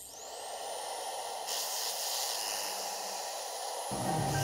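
A steady hiss of noise with a faint rising whistle at its start; it grows brighter about one and a half seconds in.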